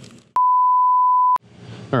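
A single electronic beep: one steady, pure, mid-pitched tone lasting about a second, switching on and off abruptly, with near silence just before and after it.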